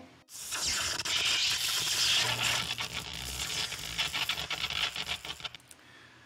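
A hissing, scratchy noise that sets in just after the start, is loudest in the first couple of seconds, thins out, and stops shortly before the end.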